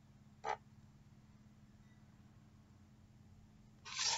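Near silence with a faint steady hum, broken by one short tap about half a second in. Just before the end, a hardback picture book starts to rustle and knock as it is moved.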